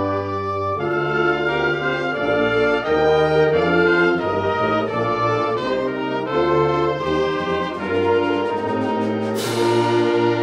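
Student concert band playing, with brass, saxophones, flute and clarinet moving through chord changes over low timpani notes. A crash rings out near the end and fades.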